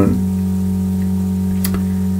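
Low, steady electrical mains hum in the recording, with a faint click near the end.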